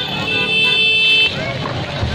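A vehicle horn sounding one steady note for about a second, over the voices of a crowd.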